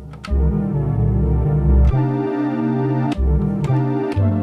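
A Novation UltraNova synth patch, sampled into an Elektron Octatrack, played chromatically from its trig keys. Held synth notes change pitch about four times, with a short click at each new note.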